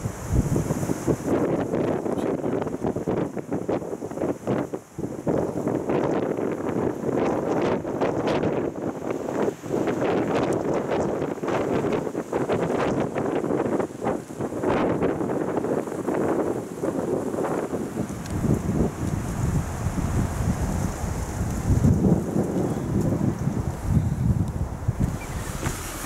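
Wind buffeting the camera microphone in uneven gusts, a loud, fluctuating rush of wind noise.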